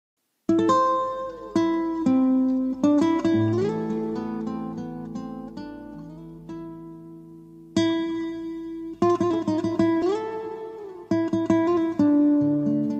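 Instrumental intro of a karaoke backing track: a plucked-string melody with notes that slide up and down, over low sustained bass notes. It starts about half a second in, and new phrases begin near the end.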